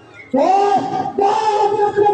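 A voice raised in a long, drawn-out wailing cry: it swoops up and down about a third of a second in, then holds one steady note.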